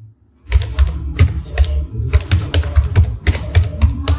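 Computer keyboard typing: a quick run of keystrokes starting about half a second in, as a folder name is typed.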